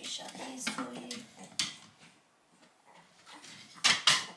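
Wooden plantation shutters being closed: a sharp click about one and a half seconds in and a louder clack near the end as the louvred panels shut. Soft whimpering vocal sounds come in the first second.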